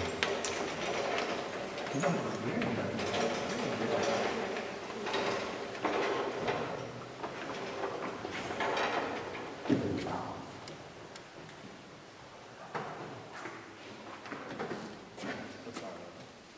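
Indistinct voices of a small group of people talking at a distance, with a few short knocks; the chatter grows quieter about ten seconds in.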